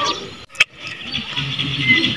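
A brief dropout and a single click where the video is cut, followed by low outdoor background with faint murmuring voices.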